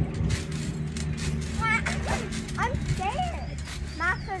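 Children's voices calling out in short cries without clear words, rising and falling in pitch, mostly in the second half. A steady low hum runs underneath.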